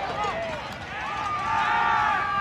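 Spectators yelling and cheering, several voices at once, swelling about a second in into long held shouts.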